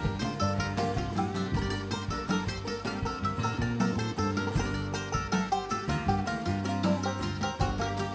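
Bluegrass band playing an instrumental break live, a mandolin picking fast runs of notes over the band's backing and a walking bass.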